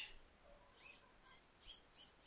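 Near silence: room tone with a few faint, short high-pitched ticks or squeaks.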